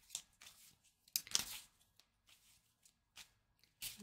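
A deck of tarot cards being shuffled by hand in an overhand shuffle: soft, scattered card slaps and rustles, the loudest cluster about a second in and a few more near the end.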